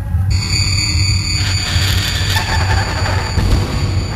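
Minimal industrial electronic music: a loud, pulsing low bass drone under a noisy texture, with thin, steady high tones coming in shortly after the start.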